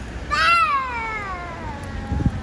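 An animal's single long call, rising briefly and then sliding down in pitch for about a second and a half.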